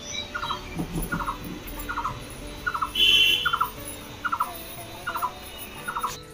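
A bird calling over and over outdoors, each call a short rattled note repeated about every second, with a brief higher chirp about three seconds in.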